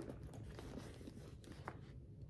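Faint rustling of cut cotton quilt pieces being pulled out of a mesh zippered pouch, with a small click near the end.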